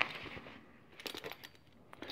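Faint metallic clicks and clinks of a belt buckle being handled and set down: one sharp click at the start, then a few softer clicks about a second in.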